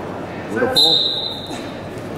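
Referee's whistle blown once: a single steady high-pitched blast about a second long, starting the third period from the referee's position.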